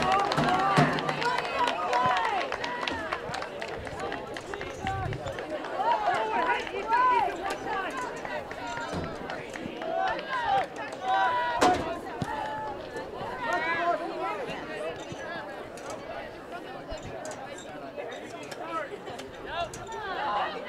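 Voices of players and spectators shouting and calling across an outdoor soccer field, heard from a distance, with one sharp thump about halfway through.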